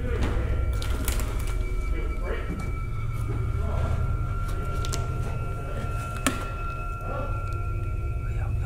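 A suspense music drone: a steady low hum with two thin high tones held above it, under faint, indistinct voices. There is a sharp click about six seconds in.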